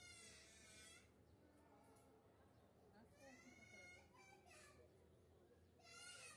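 Near silence, with a faint high-pitched voice heard twice: a drawn-out call near the start and another about three seconds in.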